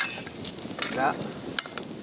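Wood campfire crackling and hissing, with a few light clicks near the end as an iron trivet is shifted into place over the embers.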